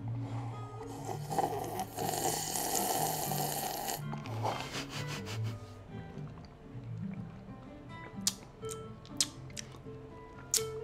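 Jazz playing in the background with a walking bass line, over which a sip is slurped from an iced drink in a plastic cup for about two seconds, from about two seconds in. A few small clicks follow near the end.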